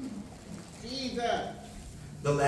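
A person's wordless vocal sounds, a few short calls sliding up and down in pitch around the middle.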